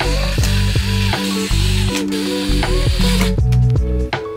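Cordless drill driver running, driving a metal connecting bolt into a particleboard panel, and stopping a little past three seconds in. Background music with plucked notes plays throughout.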